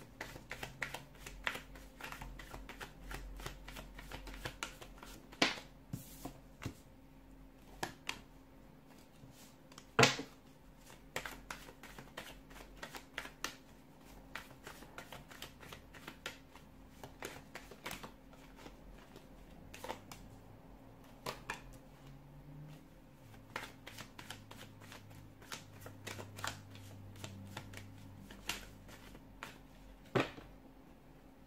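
Tarot deck being shuffled by hand, a dense run of quick card clicks and flutters, with cards laid down on the table one at a time. The sharpest snaps come about five and a half and ten seconds in.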